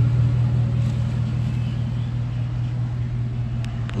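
2015 Ford F-250's 6.2-litre gas V8 idling, a steady low drone, with a faint click near the end.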